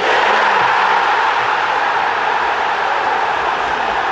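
Large football stadium crowd cheering in one loud, steady roar, as in celebrating a goal.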